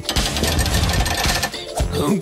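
A fast, machine-like rattling over background music with a steady bass.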